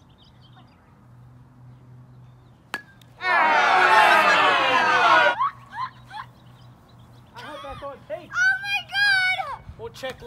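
A plastic wiffle-ball bat cracks once against the ball. About two seconds of loud crowd cheering follows, starting and stopping abruptly. Then comes high-pitched excited yelling.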